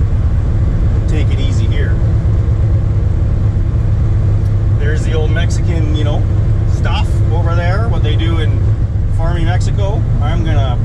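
Steady in-cabin drone of a 1981 Camaro Z28's swapped LQ4 6.0 V8 cruising at constant revs, with a man talking over it at times.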